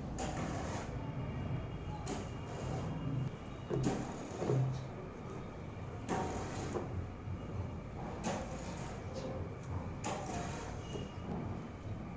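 Hands winding thread onto a car alternator's pulley: scattered soft rubs, scrapes and light knocks against the alternator, a few seconds apart.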